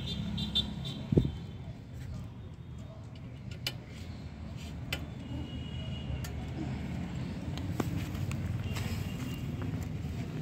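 Scattered sharp metal clicks and taps from the rear brake rod of an electric bicycle being handled and adjusted, the loudest about a second in, over a steady low background rumble.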